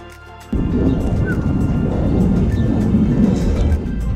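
Background music, joined about half a second in by a loud, irregular low rumble of wind buffeting the microphone that lasts until near the end.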